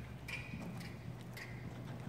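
Horse hooves stepping at a walk on the sand footing of an indoor riding arena: a few soft, irregular hoofbeats, with a steady low hum underneath.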